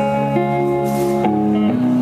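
Live electric guitar and Nord Stage keyboard playing held chords with no vocal, the chord changing about three times.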